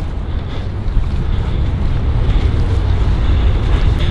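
Wind blowing across the camera microphone: a steady low rumble with a thinner hiss above it.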